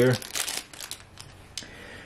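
Plastic wrapping crinkling and tearing as a boxed set of hockey cards is opened by hand: a loud burst of crinkling in the first half second, then quieter rustling with a couple of small clicks.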